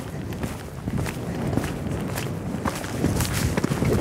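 A pony's hooves cantering on a sand arena surface: a run of dull, rhythmic hoofbeats.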